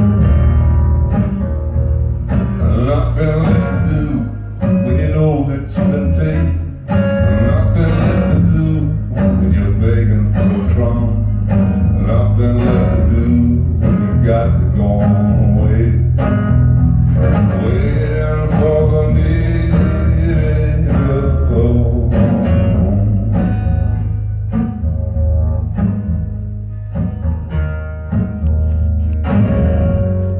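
Amplified acoustic guitar playing an instrumental passage of a slow folk song in a live performance, with a man's voice joining in at times without clear words.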